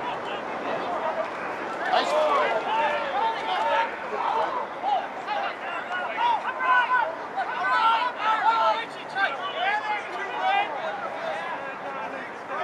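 Several voices shouting and calling out over one another: rugby players and sideline spectators during play. There are bursts of calls through most of the stretch.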